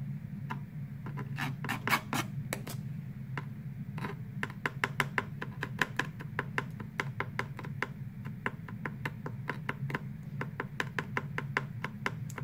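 Paring knife finely chopping a small piece of apple on a plastic tray: quick taps of the blade against the tray, about three or four a second from about four seconds in.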